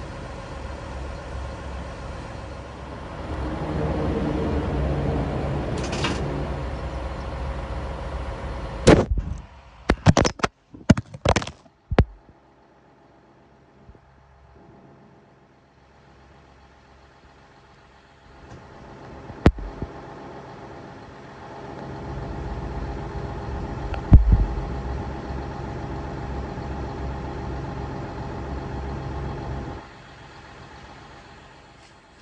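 An engine running steadily, broken about nine seconds in by a run of sharp knocks and clicks, then a few seconds of near quiet before an engine runs again, with a single loud thump about six seconds after it resumes.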